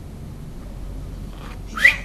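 Quiet room with a steady low hum. Near the end comes one brief, sharp sound that rises in pitch.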